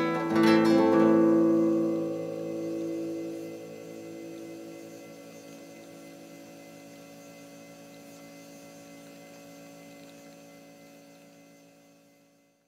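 Nylon-string classical guitar: a last chord struck about half a second in, left to ring and die away over several seconds. A steady electrical hum remains under it and fades out near the end.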